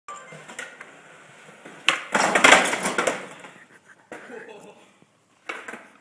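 A skateboard pop about two seconds in, then about a second of loud scraping and clattering as the board hits the metal picnic table and the skater falls onto concrete.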